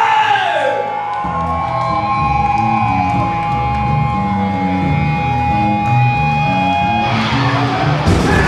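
Punk rock band playing live in a club: a long held guitar note rings over a bass line that comes in about a second in, and the full band with drums crashes in near the end.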